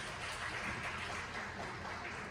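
Steady background noise of a seated audience in a large hall, with no drumming yet.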